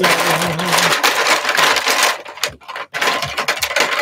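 Plastic marker pens clattering and rustling as they are handled and picked through, in dense bursts with a couple of short breaks past the middle.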